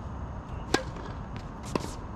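Tennis racket striking the ball on a serve, a sharp pop, followed about a second later by a second, slightly weaker hit of the ball as the rally starts.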